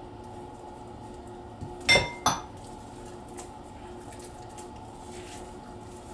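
Glass bowls clinking together: two sharp clinks in quick succession about two seconds in, the first with a short glassy ring, over a faint steady hum.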